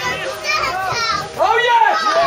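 Excited shouting and yelling from several people at the pitch side, swelling to its loudest in the last half second as they cheer a goal.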